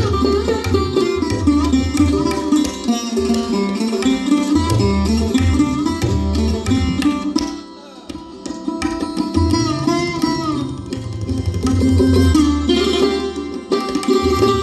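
Live Indian classical instrumental music: a sarod playing the melody with a violin, over tabla accompaniment with deep bass-drum strokes. The music thins out briefly about eight seconds in, then picks up again.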